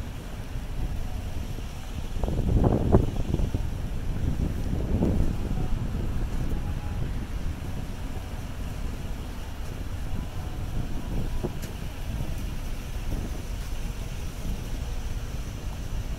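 City street traffic, a steady low rumble of cars and a bus, mixed with wind buffeting the microphone; a louder surge about two to three seconds in and a smaller one about five seconds in.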